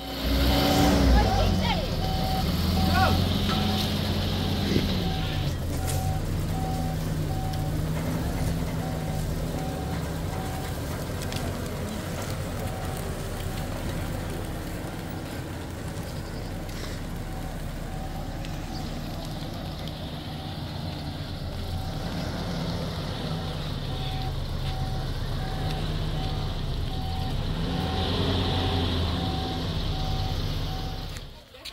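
Pickup truck engine running and revving up and down while the truck reverses, with a reversing beeper pulsing about twice a second in two stretches, near the start and over the last third.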